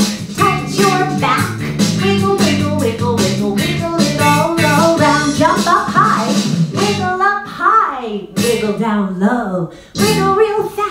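Recorded children's dance song playing: singing over a steady beat and bass line. About seven seconds in, the bass and beat drop out, leaving the singing voice sliding up and down in pitch.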